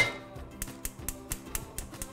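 Gas range burner igniter clicking rapidly, about six clicks a second, as the burner is lit, over soft background music.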